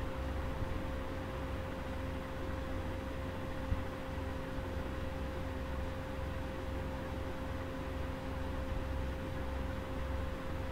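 Steady background hum and hiss: a low rumble with a steady mid-pitched tone over it, and one faint click a little under four seconds in.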